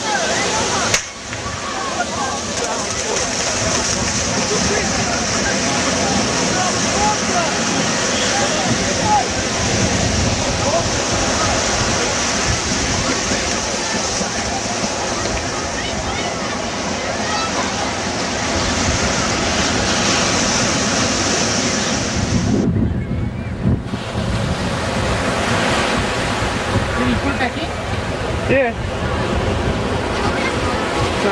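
Ocean surf breaking and washing up the beach, with wind rushing on the microphone: a loud, steady rush that briefly thins out about three-quarters of the way through.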